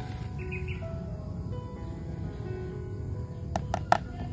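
Soft piano background music continues faintly over steady low outdoor noise. A short high-pitched sound comes about half a second in, and three sharp clicks come near the end.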